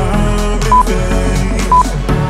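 Background music with a steady beat, with two short electronic timer beats a second apart over it: the countdown signal for the last seconds of a workout interval.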